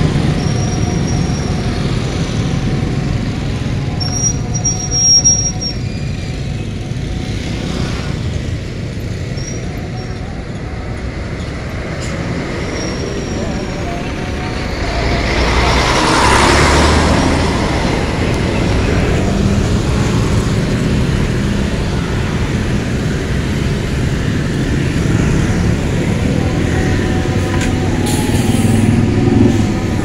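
Dense road traffic of motorcycles and container trucks heard from a riding scooter: a steady rumble of engines and tyres, with a few short high-pitched squeaks in the first half. The noise swells about halfway through as a container truck passes close by.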